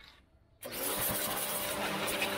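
Kawasaki HPW 220 electric pressure washer starting up suddenly about half a second in as the spray-gun trigger is squeezed, its motor and pump then running steadily with the hiss of the high-pressure water jet.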